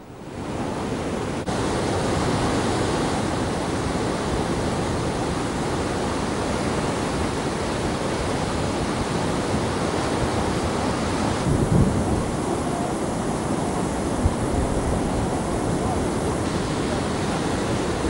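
The Kaveri River in flood, fast turbulent water rushing as a steady, even noise, swollen by a huge discharge from the KRS dam. Its tone shifts slightly a couple of times.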